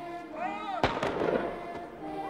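A single gunshot about a second in, sharp and followed by a short echo, just after a brief cry from a voice. Soft choral film music runs underneath.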